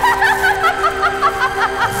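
A woman's villainous cackling laugh, a fast even run of short 'ha' notes at about four a second, over sustained music.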